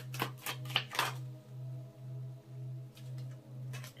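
A tarot deck being shuffled by hand: a quick run of soft card slaps and flicks in the first second or so, and a few more near the end. Under them runs a low tone that pulses about twice a second.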